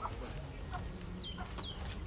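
Chickens in the background: short, high, falling peeps repeating every few tenths of a second from about a second in, over a low ambient hum.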